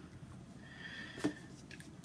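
Quiet room tone with a single soft tap about a second in, as a book is lowered and set down.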